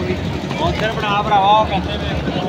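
Voices talking over the steady hubbub of a busy crowd.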